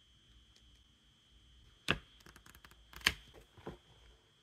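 Clear plastic wrapping being peeled off a stack of paper instruction cards and the cards handled, with two sharp snaps about two and three seconds in and a smaller one shortly after.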